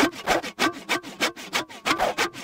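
Sound effect of a hand saw cutting through wood, in quick, even back-and-forth strokes of about four a second.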